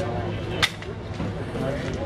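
A single sharp snap about a third of the way in, over people talking in the background.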